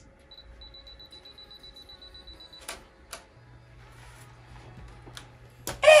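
Camera self-timer beeping, a rapid high-pitched beep for about two seconds, ending in the click of the shutter as the photo is taken; a few more short clicks follow.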